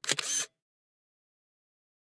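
A single camera shutter click, about half a second long at the very start, then dead silence.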